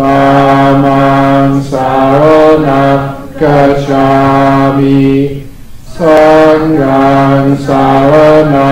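Buddhist chanting in Pali, recited together in a slow, near-monotone voice with long held syllables, broken by short pauses between phrases, the longest about five and a half seconds in.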